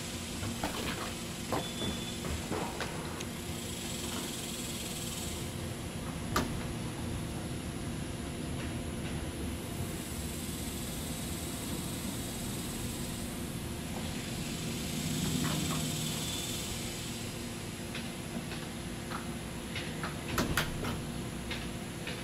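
Steady background noise with a few light clicks and knocks, the sharpest about six seconds in and a small cluster near the end, and a low hum that swells briefly a little past the middle.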